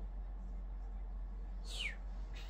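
Domestic cat giving one short, high meow that falls in pitch near the end, over a steady low hum.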